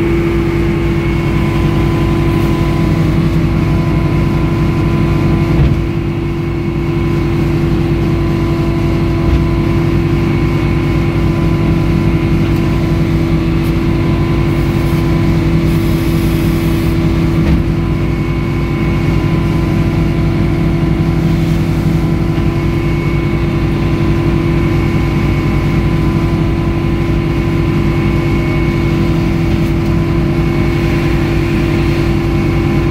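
Edmiston hydraulic sawmill running steadily while a log is sawn: a constant engine drone with a steady whine over it and a brief dip about six seconds in.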